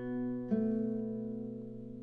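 Nylon-string classical guitar: notes of a B7 chord ringing over a low B in the bass, with another note plucked about half a second in, then slowly fading.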